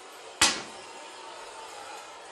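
A tossed coin landing on a Subbuteo cloth pitch laid on a table: one sharp knock about half a second in, with a brief ringing tail.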